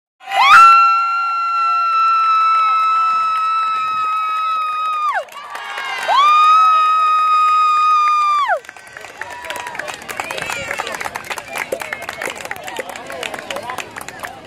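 Two long, steady, high-pitched horn blasts, each dropping in pitch as it cuts off: the signal that ends the match. After them come crowd cheering and children's voices.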